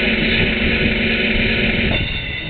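A loud, steady recorded sound effect, a noisy rush over a low steady hum, played through a street performer's portable PA speaker after its button is pressed.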